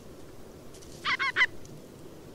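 Ruff giving its alarm call: a short burst of three quick notes about a second in, the last the loudest.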